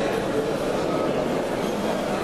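Steady, indistinct chatter of a crowd in a large hall.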